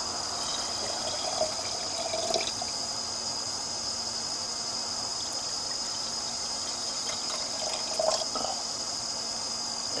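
Used hydrochloric acid poured from a glass bottle into glass jars of processor pins, the liquid trickling and splashing onto the pins.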